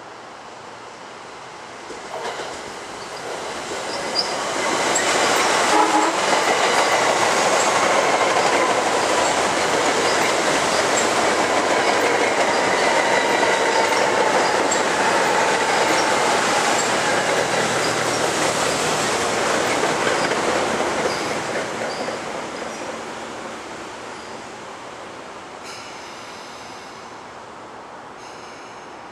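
Metro-North electric multiple-unit commuter train passing through the station at speed. The rush of wheels on rail builds from about two seconds in and stays loud for about fifteen seconds, carrying a whine that slowly falls in pitch and small regular clicks, then fades away.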